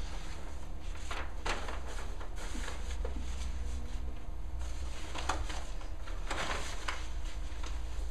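Large paper chart sheets being flipped over and handled, rustling and crackling in two spells, about a second in and again from about five to seven seconds, over a steady low hum.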